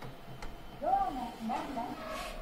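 A click, then a short phrase in a high-pitched woman's voice about a second in, fitting the recorded voice guidance of a Mitsubishi passenger elevator as its door-open button is pressed.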